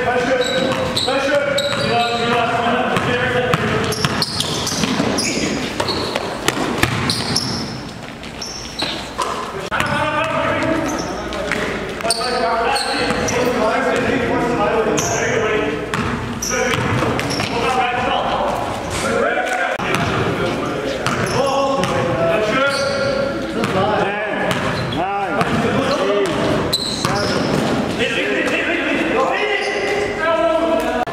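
Basketball game in a gym: a ball dribbled and bouncing on the hardwood floor, with many short strikes, while players' voices carry on over it, echoing in the large hall.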